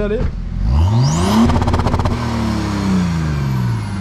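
BMW 535d's Stage 2 tuned twin-turbo diesel straight-six revved hard at standstill. The revs climb steeply for about a second, bounce off the rev limiter in a rapid stutter for about a second, then fall away slowly, with a high whistle fading down near the end.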